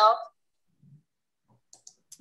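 A spoken word trails off, then a near-silent pause on a video call broken by a few faint, short clicks shortly before the next voice comes in.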